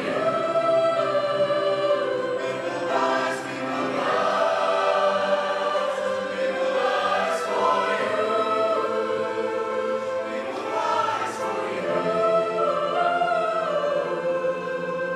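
A large mixed choir of male and female voices singing in harmony, mostly long held notes that move from chord to chord.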